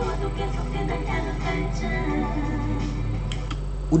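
Music playback from a studio recording session: a female singer's vocal take over the song's backing track, with a steady low hum underneath.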